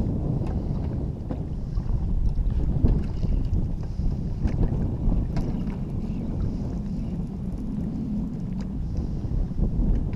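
Wind buffeting the microphone in a steady low rumble, with faint scattered small clicks and taps.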